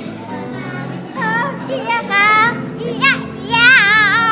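A girl singing loud, high, wavering notes in several short phrases, the longest and loudest near the end, over steady background music.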